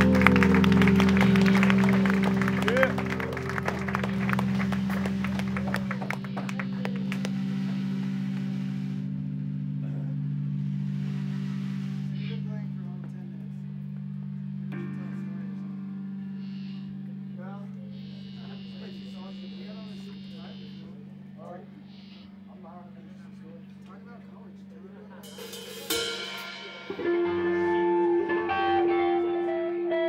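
Live rock band with drum kit, cymbals and electric guitar finishing a loud passage, which stops about nine seconds in while the amplified guitar keeps ringing as a steady hum. Voices talk under the hum in the lull, and near the end the electric guitar is struck again and rings out with a few held notes.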